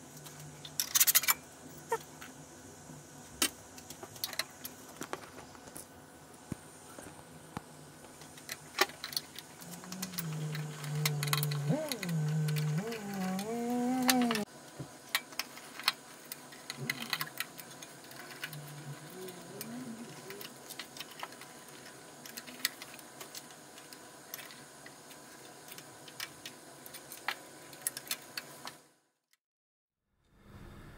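Scattered small metallic clicks and taps of hands and tools working screws and parts on a Dell PowerEdge R710 server's steel chassis, with a short wordless murmur from a voice partway through. It cuts off suddenly near the end.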